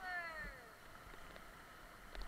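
A person's high cry falling in pitch, about half a second long at the start, over the steady rush of river rapids.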